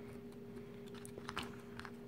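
Faint clicks and scrapes of a digital caliper being slid and its jaws set against a small circuit board, a handful of short ticks about a second in.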